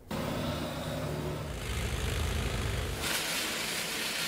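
Hydraulic tunnel drilling rig running at a rock face: a steady engine drone that gives way to a louder hiss about three seconds in.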